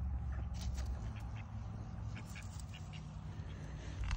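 Faint rustling and small clicks of fingers picking through tomato leaves, over a low steady rumble.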